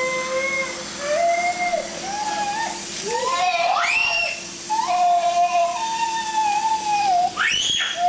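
A baby squealing and shrieking in long, held, high-pitched cries, with two sharp rising shrieks about halfway through and near the end, over the faint hiss of a garden hose spraying water.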